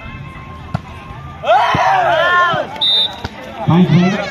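Volleyball rally: the ball is struck with a few sharp thuds while spectators shout with rising and falling cries, then a short blast of the referee's whistle about three seconds in ends the point.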